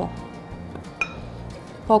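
A metal spoon clinks once against a glass mixing bowl about a second in, a single sharp chink with a brief ring.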